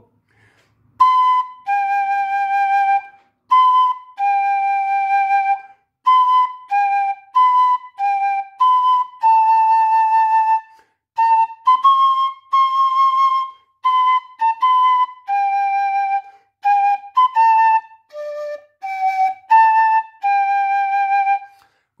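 A fife playing a simple march-like tune slowly, one clear separate note at a time. It mostly alternates B and G, climbs a little higher in the middle, dips to a low D near the end, and closes on F sharp, A and G.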